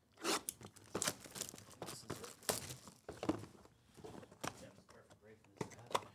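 Sealed cardboard box of trading cards being torn open by hand: a run of short, irregular tearing and rustling noises.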